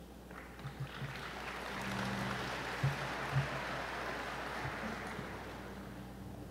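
Audience applauding, swelling for a few seconds and then fading, with two low thumps near the middle.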